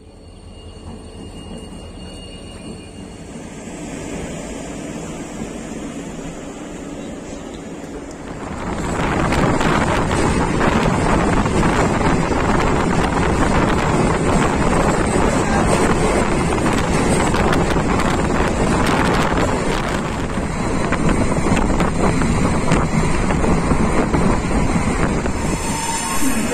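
Passenger train running, heard from inside a carriage at an open barred window: a steady rumble of wheels on rail with wind buffeting the microphone. It is quieter at first and becomes much louder and fuller about eight seconds in.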